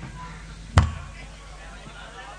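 Pause on stage in a live rock concert recording: low amplifier hum, with a single sharp, bass-heavy thump a little under a second in.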